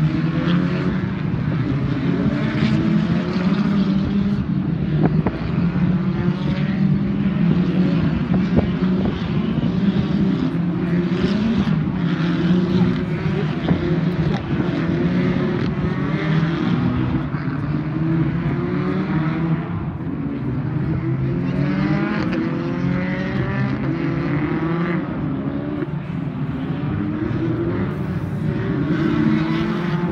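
British Touring Car Championship race cars' two-litre turbocharged four-cylinder engines at full throttle as the cars race past one after another. Their pitch climbs again and again through the gears.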